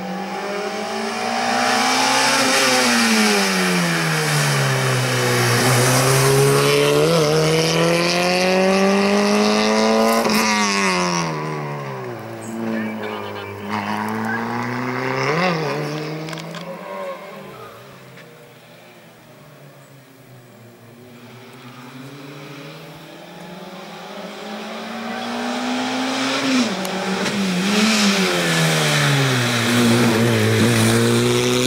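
Peugeot 106 slalom car's engine revved hard, its pitch climbing and dropping over and over as the driver works the throttle and gears through the cone chicanes. It fades for a few seconds past the middle, then builds up again.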